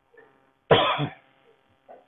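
A person's short, sharp burst of breath about a third of a second in length, with two pulses, coming a little before the middle, through a video call's narrow-band audio.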